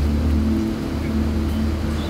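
Vehicle engine idling: a steady low drone, with a higher hum that fades in and out.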